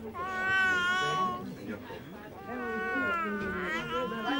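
Newborn baby crying in long, high wails: one cry at the start lasting over a second, then another beginning about two and a half seconds in.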